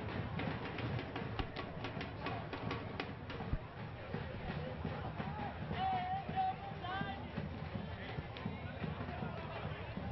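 Match sound picked up on the pitch of a football ground: distant voices of players and spectators over a steady background haze, with scattered knocks. A faint raised voice calls out about six seconds in.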